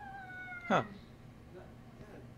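A cat's single drawn-out meow, nearly level in pitch and sinking slightly, lasting under a second.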